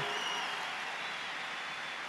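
Large audience applauding steadily, with a short high whistle near the start.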